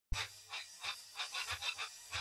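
Rapid, quiet panting: a string of short breathy puffs coming irregularly, several a second.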